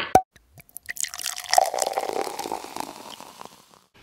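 A cork popping from a wine bottle, then about a second later wine pouring and splashing into a glass for a couple of seconds, fading out near the end.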